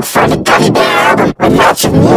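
Loud, heavily distorted and pitch-shifted vocal audio from an editing-effects remix, in short choppy segments with brief breaks between them.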